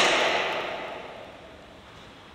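The echo of a man's shout dying away over about a second and a half in a large, hard-walled hall, fading to a low room hiss.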